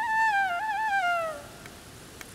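Background music: a solo flute holds a note with small ornamental turns, then glides down in pitch and fades out about a second and a half in.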